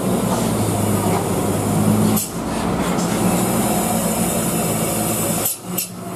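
Diesel engine of a heavy Hino truck running, a steady low drone, with a brief drop about two seconds in and another near the end.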